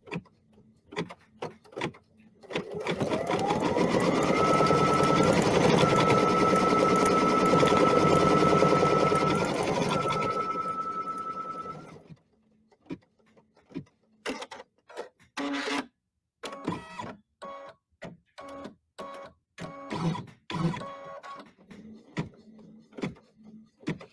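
Computerized embroidery machine stitching out an appliqué tack-down line. It spins up with a rising whine about two and a half seconds in, runs fast and steady for several seconds, and winds down around twelve seconds in. Scattered light clicks follow.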